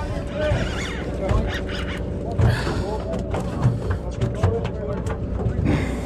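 Indistinct voices of other anglers along a boat's rail over a low steady rumble, with scattered short clicks while a spinning reel is cranked in.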